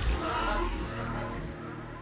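Channel logo sting: music with sound effects, including a wavering animal-like cry in the first second.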